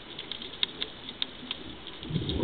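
Underwater ambience: irregular sharp clicks, two or three a second, over a faint low rush.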